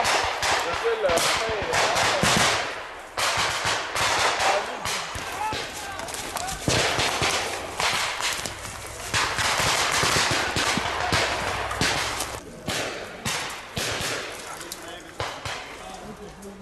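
Small-arms fire from soldiers' rifles: rapid shots and bursts close together through most of the stretch, briefly thinning out twice near the end.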